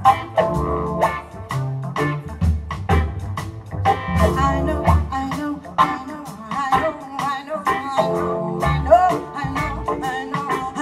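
Live jazz band playing: a bass line and drum kit keeping a steady beat under a bending melodic lead line, with guitar among the instruments.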